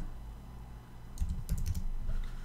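Computer keyboard typing: a quick run of a few keystrokes about a second in, after a quiet pause.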